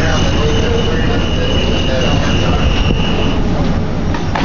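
Steady, loud engine rumble of fire apparatus running at the fire scene, with a continuous high-pitched whine over it that cuts off about three seconds in. Faint voices in the background.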